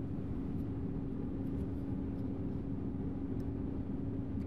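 Steady low background hum of a laboratory room with a constant low tone, and a few faint light clicks from handling small plastic labware.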